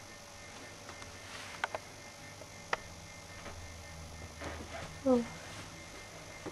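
Quiet room with two faint sharp clicks, then a woman's short exclamation, "oh", with a falling pitch near the end.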